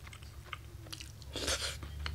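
Quiet chewing of a mouthful of pork-and-cabbage curry rice, soft mouth sounds with a short louder noise about one and a half seconds in.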